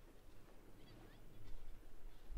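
Faint wind rumble on the microphone and water noise from a boat on choppy sea, with a few faint short high squeaks about a second in.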